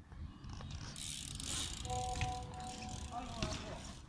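Mountain bike rolling on concrete with its freewheel ticking, a sharp knock a little after two seconds in, and a steady held tone for about a second alongside.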